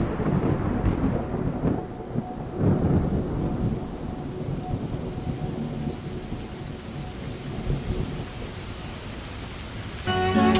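Rolling thunder with a steady rain-like rushing noise, a storm sound effect. The rumble swells loudest in the first three seconds and then settles, with a faint held tone underneath.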